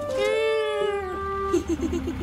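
A cartoon character crying: one long whimpering wail that rises and falls, then a quick run of short sobs near the end.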